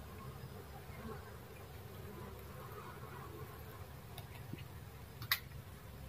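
A colony of dwarf honey bees (Apis florea) humming steadily, a low buzz from the mass of bees clustered on the branches. A few small clicks come through near the end, the loudest a single sharp click about five seconds in.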